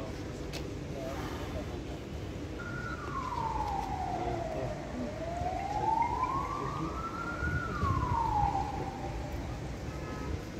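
An emergency vehicle's siren wailing: starting about two and a half seconds in, it slowly falls in pitch, rises again, then falls away near the end, over steady street noise.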